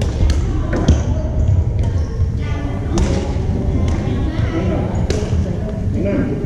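Badminton rackets striking a shuttlecock in a rally: a few sharp hits spread a second or two apart, echoing in a large gym over the steady murmur of players' voices.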